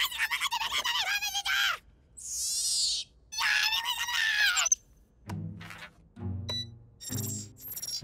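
Cartoon soundtrack: two high, wavering squeals with a brief whoosh between them, followed by three short low notes of comic music.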